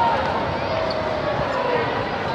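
Spectator crowd: many overlapping voices shouting and talking at once, with one long drawn-out shout falling slowly in pitch through the second half.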